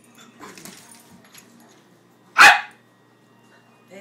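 Jack Russell terrier barking once, a single short bark about two and a half seconds in, amid excited play with another dog.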